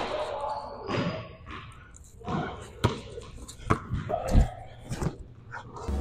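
Basketball dribbled on a hardwood gym floor: a string of sharp bounces at an uneven pace.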